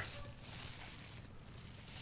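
Faint rustle of dry leaf mulch as a fallen feijoa fruit is picked up off the ground, with a slight swell about half a second in; otherwise quiet outdoor background.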